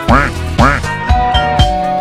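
Electronic house music: a steady four-on-the-floor kick about twice a second, two quick quacking 'wah' sweeps of a filtered synth in the first second, then a held synth note.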